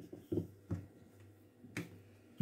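Wooden rolling pin knocking against a marble worktop while thin dough is rolled out: three short sharp knocks, the loudest near the end.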